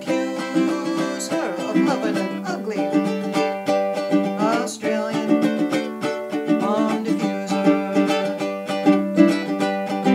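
Low-G tenor ukulele by Ko'Aloha, strummed in a steady rhythm of chords.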